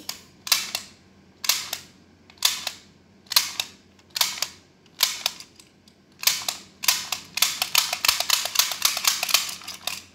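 A plastic toy tool clicking in short bursts about once a second, then clicking fast and almost without pause for the last few seconds.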